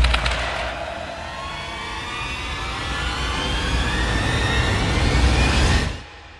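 Intro sound effect: a loud rushing swell whose pitch climbs slowly and builds in loudness, then cuts off abruptly at the end.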